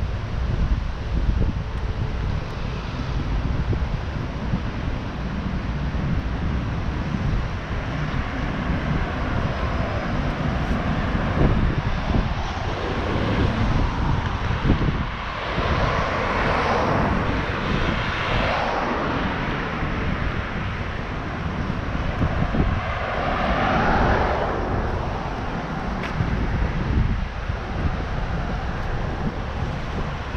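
Street traffic with wind buffeting the microphone: a steady low rumble throughout, and passing vehicles swelling up about two-thirds in and again near the end.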